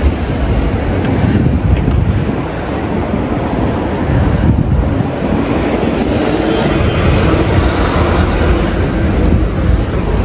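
City-street traffic noise: a steady, loud, low rumble from a double-decker bus and other road traffic close by.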